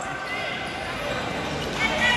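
Futsal ball thudding on the hard court floor of a large indoor sports hall, over indistinct chatter of players and spectators.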